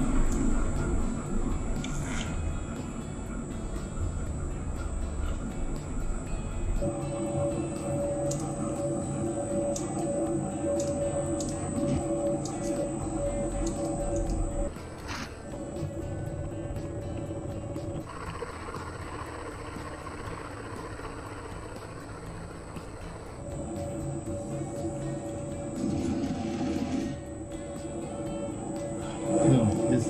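Horizontal milling machine running as its gear cutter cuts the teeth of a gear blank held in a servo-driven dividing head, with a steady whine. The sound changes abruptly a few times, dropping out and returning.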